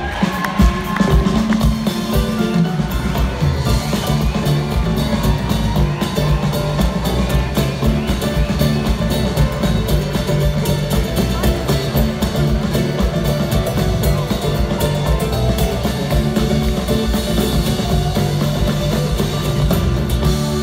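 Live band playing loudly through a concert-hall PA, with drum kit, bass and electric guitar, heard from the audience.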